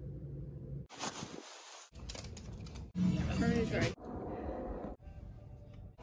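A run of about six one-second home-video snippets cut back to back, each with its own room sound and cutting off abruptly. A brief voice is heard in a few of them, the clearest around three seconds in, with a short burst of hiss about a second in.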